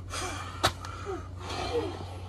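A man gasping for breath, out of breath from burpees, with a single sharp knock about two-thirds of a second in.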